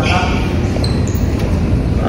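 A person laughs briefly at the start, over a steady low rumble that fills a large, echoing hall.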